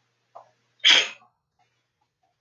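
A person sneezing once, short and loud, about a second in, after a faint catch of breath.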